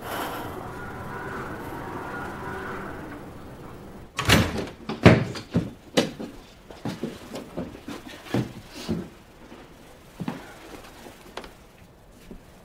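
A door closing, then several sharp knocks about four to six seconds in, with lighter clicks and rustles after them.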